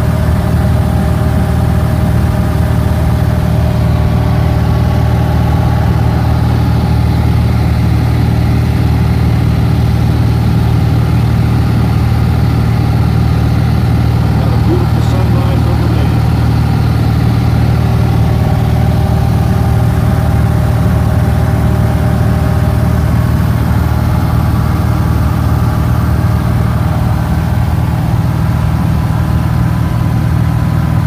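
Steady drone of a small single-engine airplane's engine and propeller heard from inside the cabin in level cruise, loud and unchanging in pitch.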